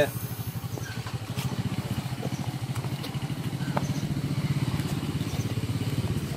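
A small engine running steadily, with a fast, even low throb.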